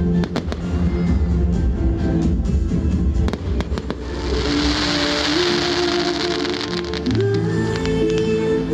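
Fireworks going off over music with long held notes: a quick run of sharp bangs in the first three seconds or so, then a loud hissing rush for about three seconds from four seconds in.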